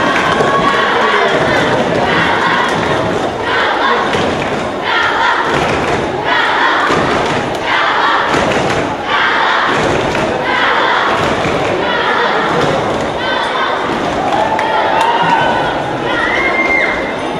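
Crowd in a sports hall cheering in rhythmic surges, about one every second and a half, with thuds in time with them.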